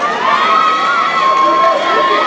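Spectators shouting and cheering at a grappling match, with one voice holding a long drawn-out shout over the crowd.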